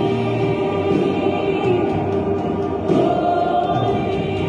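Worship music with a choir singing long, held notes.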